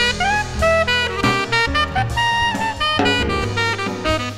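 Small jazz ensemble playing: a saxophone carries the melody, some notes bending upward, over drum kit and bass.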